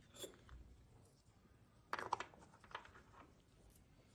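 Quiet handling sounds: a few short clicks and knocks, with a cluster of them about two seconds in, as small glass and plastic containers are moved on a tiled lab bench.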